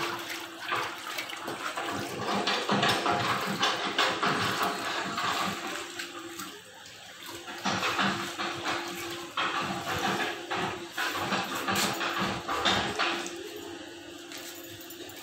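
Water sloshing and splashing in a plastic tub as a ceramic floor tile is dipped and soaked in it, in two long stretches with a short lull between.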